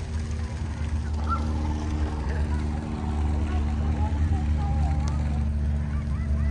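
Tour boat's motor running steadily with a low hum, faint voices behind it.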